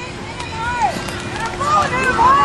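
Women's voices shouting and calling out in short high-pitched cries, with a faint steady hum underneath.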